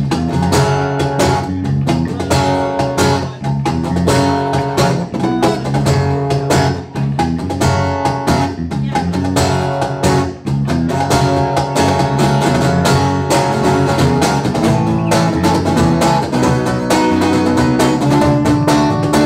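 Live acoustic band music: a strummed acoustic guitar over an electric bass line, with a cajón keeping a steady beat.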